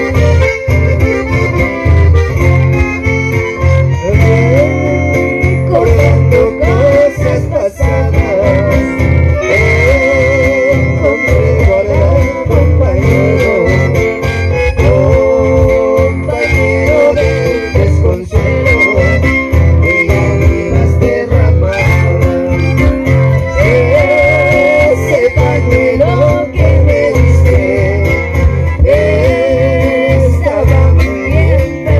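Live chamamé played by an acoustic ensemble: strummed acoustic guitars with a piano accordion and a bandoneón carrying the melody over a steady lilting beat, and a woman's voice singing.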